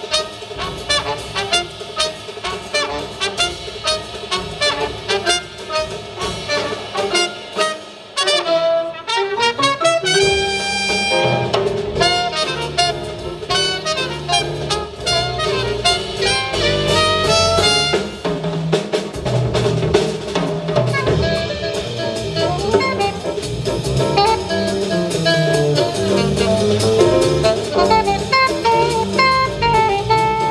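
Live jazz quintet playing: trumpet and saxophone over grand piano, upright bass and drum kit. The music dips briefly about eight seconds in, then the band plays fuller, with the bass stronger.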